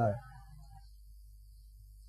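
A pause in a man's speech: his voice trails off just after the start, leaving only a faint low hum of room tone.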